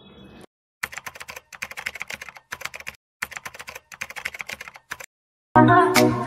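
Computer keyboard typing: rapid clicks in two runs of about two seconds each, with a short silence between them. Music starts just before the end.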